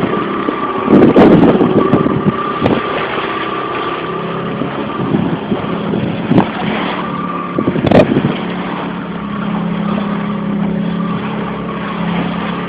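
Boat engine running steadily with a continuous hum, with a few sharp knocks and bumps from handling on deck over it.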